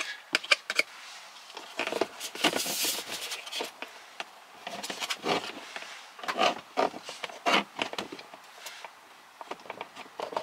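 Plastic lower dashboard trim panel being handled and offered up into place: irregular scrapes and rubs of plastic on plastic, with several small clicks in the first second and light ticks near the end.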